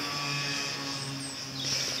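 Steady outdoor background: a low, even hum with a high steady drone above it, and one faint short chirp about a second in.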